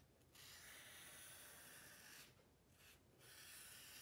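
Faint rubbing of a Sharpie permanent marker's felt tip drawing lines on paper, in long strokes broken by short pauses where the pen lifts, one just after the start and two in the second half.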